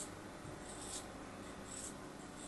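Craft-knife blade slicing through a packed block of kinetic sand: a faint, crumbly scraping in three short strokes, about one a second.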